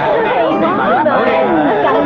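Several voices talking over one another in lively, overlapping chatter, urging each other to drink.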